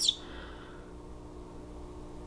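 Quiet room tone with a faint, steady low hum, after the tail of a spoken word right at the start.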